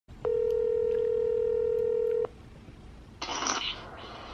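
A telephone ringback tone: one steady, low electronic tone lasting about two seconds, the ring a caller hears while the other phone rings. A short rustling hiss follows about three seconds in.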